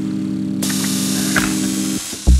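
Minimal techno track: a steady low synthesizer tone, several notes stacked, held through a break in the beat. A wash of hiss comes in about half a second in and stops just before the end.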